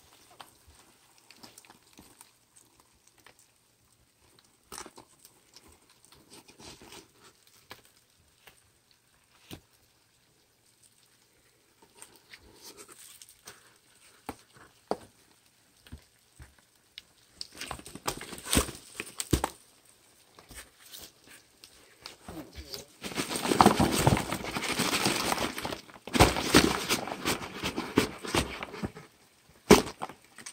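Cardboard flats and a cardboard box being handled and shaken over a plastic tub to knock dubia roach nymphs out. At first there are scattered light taps and rustles. Later comes louder shaking and scraping of cardboard, densest in the last several seconds.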